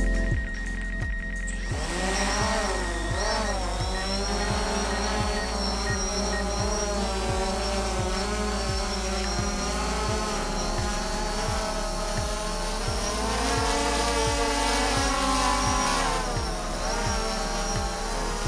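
Quadcopter drone's motors and propellers whining, the pitch rising and falling as it strains to lift a basket hanging on a rope, a load that is too heavy for it. Background music with a steady beat plays underneath.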